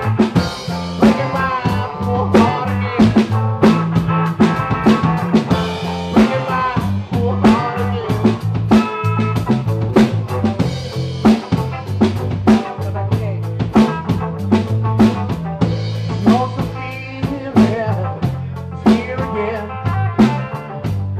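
Live blues-rock trio of guitar, bass guitar and drum kit playing an instrumental stretch of a song: guitar lines over a sustained bass part and a steady drum beat with regular snare and rimshot hits.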